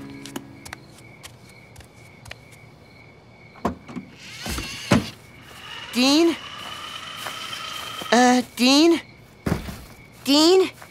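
Cartoon soundtrack effects: scattered soft thumps and clicks and a brief whoosh, then three short vocal sounds, each rising in pitch, in the second half.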